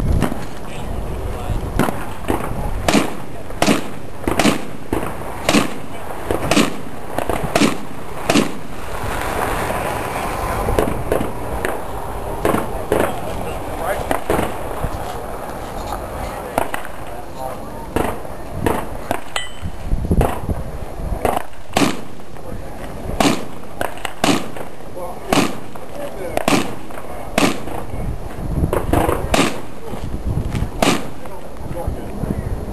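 Strings of gunshots from a 3-gun match stage, one shot every half second to a second. There are two short breaks in the firing, about a third of the way in and just past halfway.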